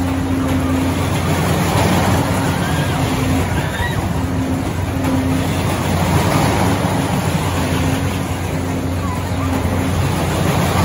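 Steady machinery hum of a running Ring of Fire loop ride and fairground equipment, with a higher drone that cuts in and out and a faint murmur of voices.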